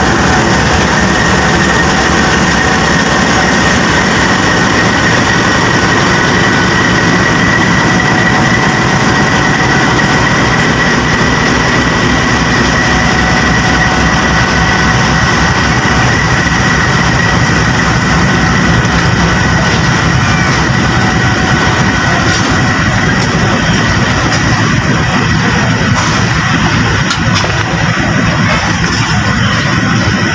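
Diesel locomotive hauling a passenger train slowly out of the station, its engine running under load with a steady high whine, followed by the power van and coaches rolling past.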